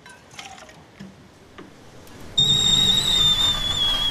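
A few faint knocks, then a loud, shrill whistle starts suddenly about two and a half seconds in, holding one high note that sags slightly in pitch.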